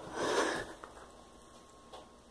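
A person sniffing once: one short, sharp breath through the nose lasting about half a second, shortly after the start.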